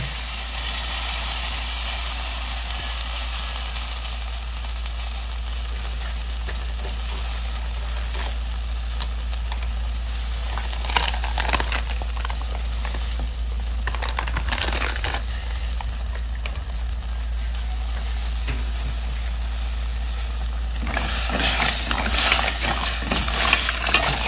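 Mussels in tomato sauce cooking in a stainless steel pot on the stove, a steady sizzling hiss with a few scattered clicks. Near the end a spoon stirs the shells in the pot, a louder uneven clatter.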